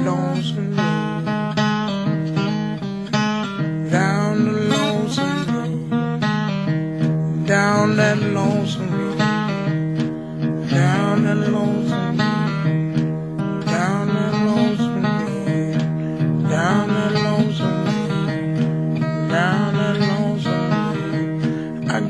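Blues guitar playing an instrumental passage, with notes that slide up into pitch, over a steady low accompaniment.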